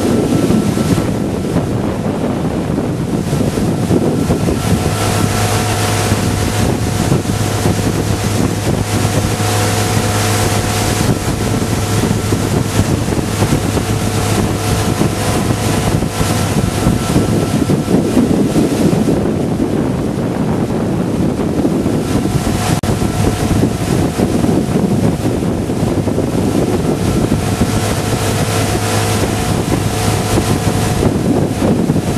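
Motorboat engine running steadily under way, with wind buffeting the microphone. The engine's hum fades briefly a little past the middle and then returns.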